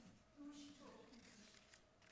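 Near silence in a hall: a faint, brief voice and light handling of paper sheets at a lectern.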